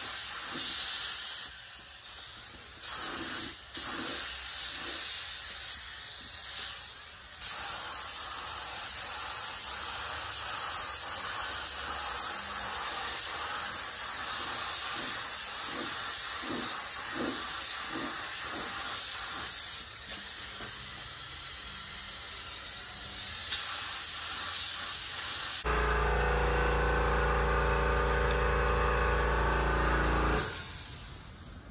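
Air-fed paint spray gun hissing as it sprays a motorcycle rear fender, in long passes broken by several short pauses where the trigger is let off. Near the end it cuts off abruptly and a steady low hum takes its place.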